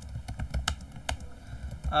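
Typing on a computer keyboard: an uneven run of quick keystroke clicks as a short phrase is typed.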